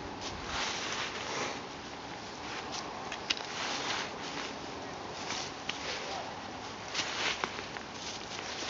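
Footsteps and trekking poles in dry fallen leaves on a steep uphill climb: uneven rustling bursts with a few sharp taps of the pole tips.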